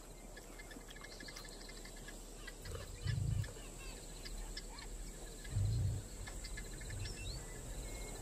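Bush ambience of insects and small birds chirping in quick repeated ticks and trills. There are two soft low thuds, about three and five and a half seconds in.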